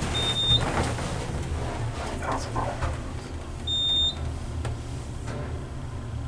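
Schindler traction elevator car travelling down, with a steady low hum of the ride. Two short high electronic beeps sound, one at the start and one about four seconds in.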